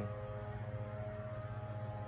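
Crickets or other insects chirring in a steady high chorus, with a low steady hum underneath.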